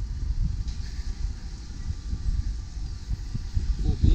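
Wind buffeting the camera's microphone: an uneven low rumble that rises and falls throughout.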